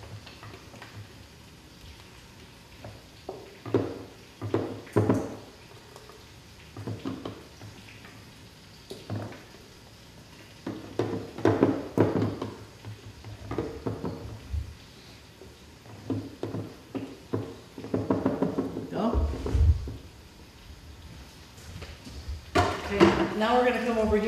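A spatula scraping thick dressing out of a blender jar into a measuring cup: short, irregular scrapes and taps against the jar, with a low thump about twenty seconds in.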